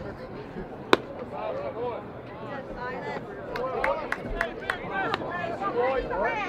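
A single sharp crack of a bat hitting a pitched baseball about a second in, followed by players and spectators shouting and cheering, growing louder toward the end.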